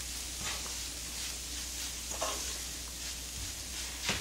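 Wooden spatula stirring sticky syrup-glazed dried anchovies around a nonstick frying pan, with a faint, soft sizzle from the pan on gentle heat and a few light scrapes.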